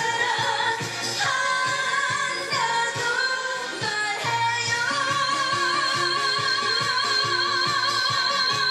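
A woman singing a Korean pop song into a handheld microphone over a backing track with a steady drum beat; about five seconds in she holds one long note with vibrato.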